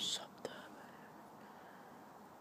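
A brief breathy whisper at the start, followed by a single sharp click about half a second in, then faint background noise.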